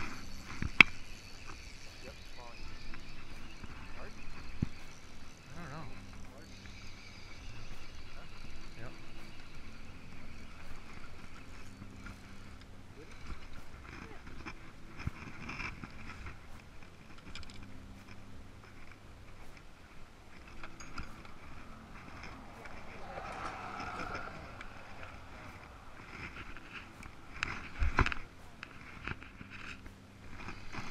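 Low, indistinct talk and handling noise on a fishing boat while a largemouth bass is landed and held, with a sharp click about a second in and a louder clatter of knocks near the end.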